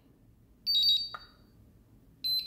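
iMAX B6 battery charger giving a single high electronic key beep as one of its buttons is pressed, followed by a faint click.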